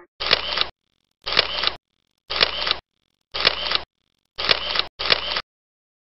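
Computer-made sound effect: six identical half-second bursts, each starting with a sharp click, about one a second, the last two back to back.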